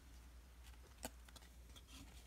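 Near silence while a stack of baseball cards is handled, with one faint click about halfway through as a card is slid or tapped.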